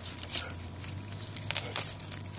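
Gloved hand pulling a pineapple fruit off its stem among the plant's stiff leaves: leaf rustling and crackling, with a few sharper cracks about one and a half seconds in.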